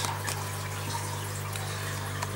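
Fish-room aquarium water circulation: a steady trickle and wash of running water over a steady low hum.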